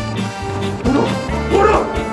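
Background music with a dog barking twice, short loud barks about a second in and again about half a second later.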